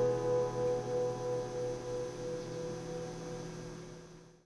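Final chord on a Maton mini Diesel Special acoustic guitar ringing out and fading away slowly, with no new strums.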